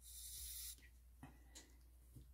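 A short, soft burst of canned air hissing out through its straw for under a second, blowing wet alcohol ink across a resin-coated board, followed by a couple of faint small ticks.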